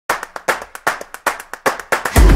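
Jump rope slapping the gym floor in quick sharp strikes, about eight a second, alternating louder and softer.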